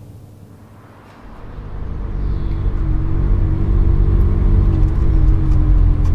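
Ferrari 360's V8 engine running with road rumble, heard from inside the cabin: a low, steady drone that fades in about a second in and is at full level by the halfway point.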